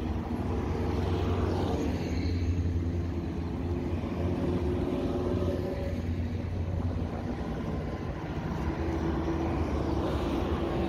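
Road traffic passing close by: a steady low rumble of vehicle engines and tyres, from the minibuses and buses driving past, with an engine hum that strengthens near the end as a bus comes alongside.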